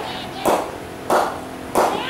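Slow, regular hand claps close to the microphone, about three in two seconds, each short and sharp.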